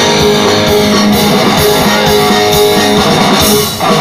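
Live rock band playing an instrumental passage: electric guitars over bass and a drum kit, loud and steady, with a short drop in level near the end.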